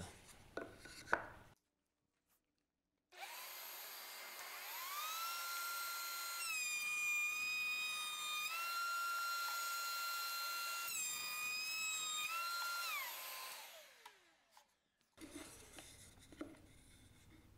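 Table-mounted router with a cove bit starting up, its whine rising to a steady high pitch. The pitch dips under load with cutting noise during two passes of a board along the fence, then the router is switched off and winds down near the end.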